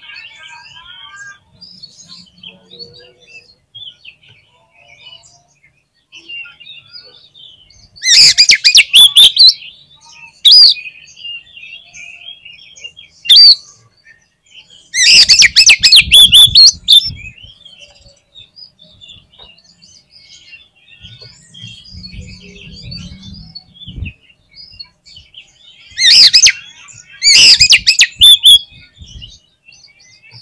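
Oriental magpie-robin (kacer) in full song: several loud bursts of rich, varied song, the longest about a third and a half of the way in and near the end, with quieter chirping and twittering between them.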